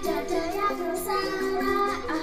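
Music with singing voices, held notes moving from pitch to pitch.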